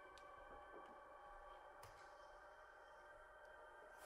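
Faint electroacoustic music from a rotating loudspeaker: a held cluster of several steady high tones, with two soft clicks, one shortly after the start and one near the middle.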